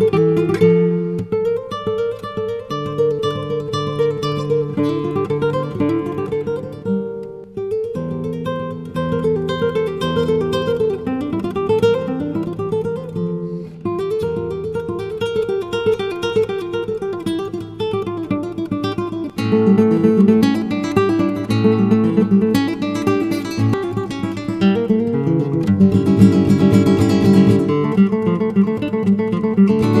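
Solo nylon-string classical guitar playing fast arpeggiated runs that rise and fall. It grows louder and fuller, with thicker chords, about two-thirds of the way through.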